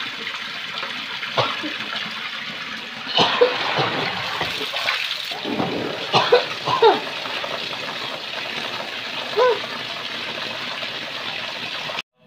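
Tap water running steadily from a wall faucet into a plastic basin, with splashes and knocks as hands wash produce in the stream.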